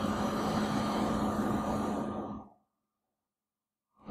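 Steady background hiss with a low hum from the recording, cutting off abruptly a little past halfway into dead silence.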